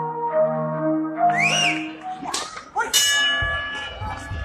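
A ring bell is struck once, about three seconds in, and keeps ringing: the bell that starts round one. Before it, a melodic intro music phrase ends about two seconds in, with a short rising-and-falling tone near its end.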